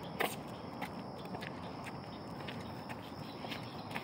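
Quiet footsteps of a person walking a dog on a leash, with a few faint scattered clicks over a steady low background hiss.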